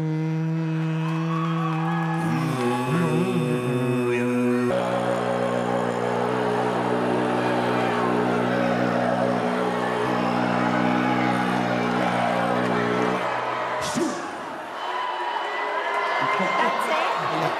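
Tuvan throat singing by a man: one held low drone with strong overtones shifting above it. The drone drops in pitch about two seconds in, shifts again about five seconds in, and stops a few seconds before the end. A single sharp click follows about a second later.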